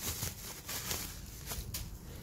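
Plastic bubble wrap rustling and crinkling as a part is handled and taken out of it, with a few light ticks through it.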